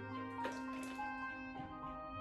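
Background music with held, steady notes. About half a second in, a brief splash as liquid batter pours from a glass bowl into a steel mixing bowl.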